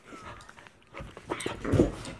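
A dog at close range, panting and shuffling on a blanket, with a louder bump near the end.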